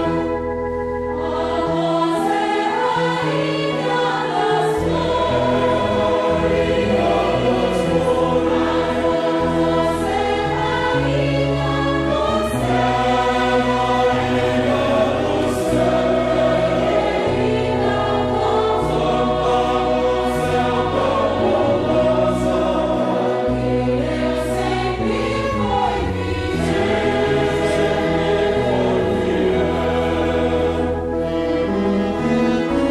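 Mixed choir singing a hymn in held chords, accompanied by a small orchestra of cellos, violins and low brass. Its bass line steps from note to note every second or two.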